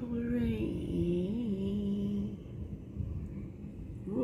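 A voice singing a few long, drawn-out notes that step down in pitch with a brief wobble, stopping a little over two seconds in; a steady low rumble runs underneath.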